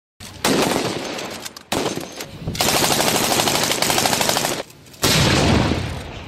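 Machine gun firing three long bursts of rapid automatic fire with short pauses between them, the middle burst the longest and steadiest.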